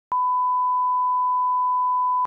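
Broadcast line-up test tone, the 1 kHz reference tone that accompanies colour bars: a single steady pure beep that starts abruptly with a click just after the start.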